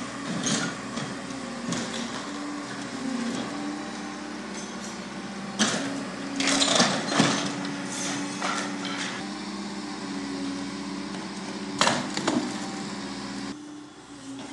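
Liebherr demolition excavator's engine running, its pitch rising and falling as the hydraulic arm works. Its grab tears into the timber roof structure: wood cracking and splintering with crashes of falling debris, loudest about six to seven seconds in and again near twelve seconds.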